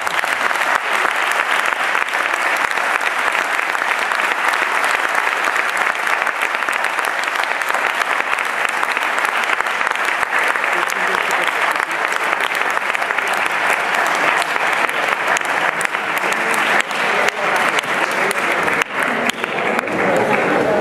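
Audience applauding: many hands clapping in a steady, dense patter that eases slightly near the end.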